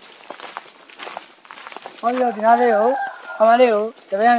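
Footsteps with scattered clicks and rustles over ground littered with dry bamboo and debris. From about halfway in, a man's voice takes over and is the loudest sound.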